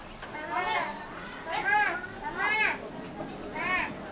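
Repeated short, high-pitched calls from a voice, each rising then falling in pitch, about one a second.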